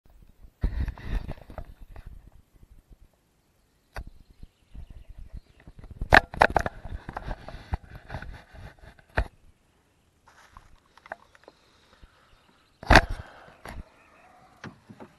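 Clunks, knocks and rattles of oars and gear in a wooden rowboat, coming in short bursts with silent gaps between; the loudest knocks come about six seconds in and near the end.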